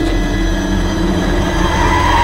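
Loud, steady low rumble with a sustained hum, a continuous mechanical-sounding drone in a film soundtrack.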